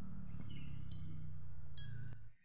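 Short, high chiming tones, twice, over a steady low hum.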